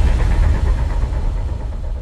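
Deep low rumble of a cinematic intro sound effect, the tail of a boom that follows a falling whoosh, slowly fading away.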